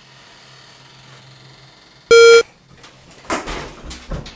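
A single short, loud electronic beep about halfway through: a steady, buzzy tone lasting about a third of a second that cuts off sharply. Near the end, a rustle and clatter as a door is handled.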